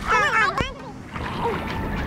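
Water splashing from a swimmer's arm strokes and kicks at the sea surface. A person's voice is heard in the first half second.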